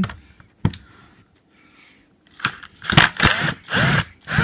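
Metal hand tools clattering and rattling in a plastic toolbox: one click about half a second in, then a dense run of rattling from about two and a half seconds in, loudest near the end.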